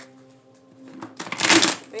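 A deck of tarot cards rustling as it is shuffled, one brief rustle of about half a second past the middle.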